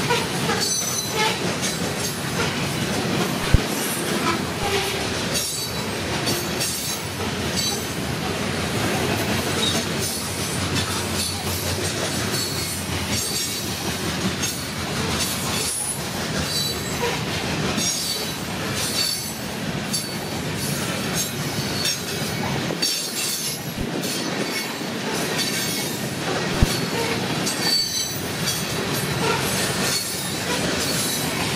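Covered hopper cars of a freight train rolling past: a steady rumble and clatter of steel wheels on rail, with short high wheel squeals. There are two sharp clanks, one a few seconds in and one near the end.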